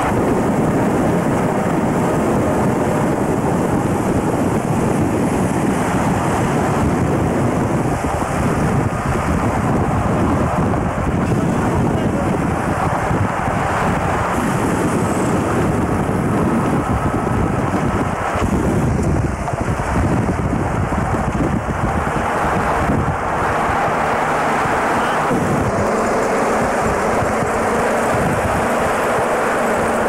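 Steady road and engine noise from a vehicle travelling at speed, with wind buffeting the camcorder microphone.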